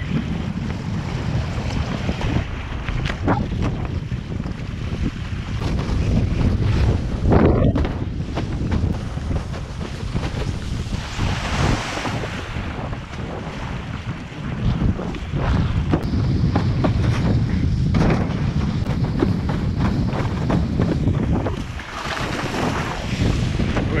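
Strong wind buffeting the microphone over the rushing splash of water along a windsurf board sailing fast through chop. The hiss of spray swells louder about halfway through and again later, and there is one sharp thump about a third of the way in.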